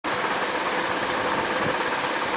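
Steady hiss-like background noise with a faint, even hum running through it.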